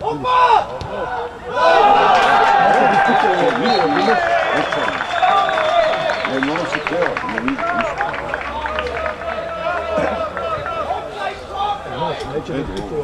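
Excited shouting at a football goal: a voice crying "Opa! Opa!", then a long drawn-out shout with held notes that goes on for several seconds.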